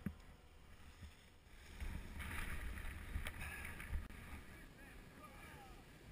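Wind buffeting the camera microphone in an uneven low rumble, with a few soft thumps as the paraglider touches down on the snow.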